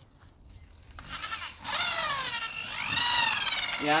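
Electric drill with a paddle mixer churning tile adhesive in a bucket: the motor starts about a second in and whines, its pitch wavering slowly up and down as it works through the thick mix.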